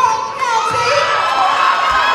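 Audience cheering, with many high-pitched screams and shouts overlapping.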